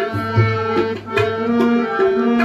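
Tabla played in a steady rhythm, sharp strokes recurring under sustained, steady reed-organ notes typical of a harmonium accompaniment.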